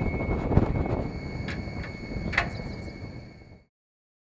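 Steel access door at the base of a wind turbine tower being unlatched and opened, with two sharp metallic clicks over a steady low rumble. The sound fades out near the end.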